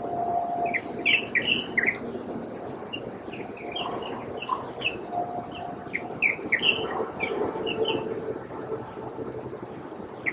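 Birds giving short, sharp chirping calls: a quick run of five or six notes about a second in, scattered single notes through the middle, and another burst of notes after about six seconds.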